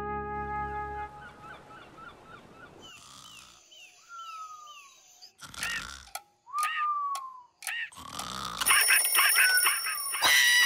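Cartoon soundtrack: a brass chord fades out, followed by playful music and sound effects with short repeated chirps and sliding whistle-like tones that fall in pitch. It grows loud and busy near the end.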